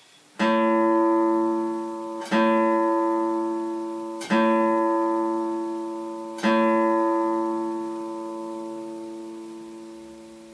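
A guitar sounding the same note or chord four times, about two seconds apart. Each attack is left to ring out, and the last one fades away over several seconds.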